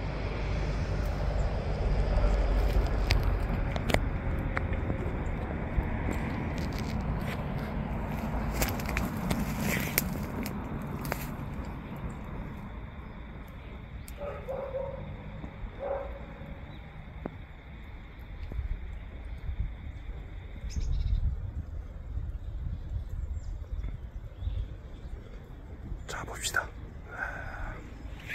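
Outdoor background noise: a steady low rumble, louder in the first half, with scattered light clicks early on and two short calls about a second and a half apart just past the middle.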